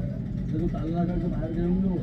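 A man's voice talking, over a low steady rumble.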